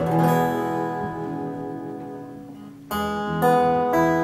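Acoustic guitar: a strummed chord rings and fades for nearly three seconds, then strumming starts again with sharp, repeated attacks.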